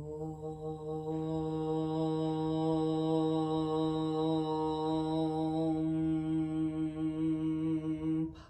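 A woman chanting one long "Om" on a single steady pitch, opening on the vowel and closing into a hum about a second in.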